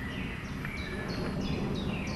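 Woodland background: a steady rushing noise with a few faint, high bird chirps.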